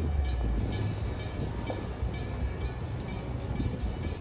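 Steady low rumble of the sailing catamaran's motor running at slow speed, with a noisy wash over it.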